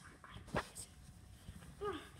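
Mostly quiet handling of plush toys close to the microphone, with one soft knock about half a second in and a few fainter taps. A short vocal sound, falling in pitch, comes just before the end.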